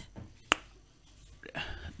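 A single sharp click about half a second in, during a quiet pause in a small studio.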